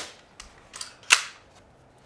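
Pneumatic upholstery staple gun firing a single sharp shot a little over a second in, driving a staple through burlap into the wooden seat frame, with a fainter click just before it.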